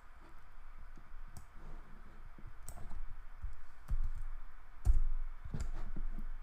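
Scattered clicks of a computer mouse and keyboard as a spreadsheet formula is finished and entered, over a faint steady hiss. A few dull low thumps come in the second half.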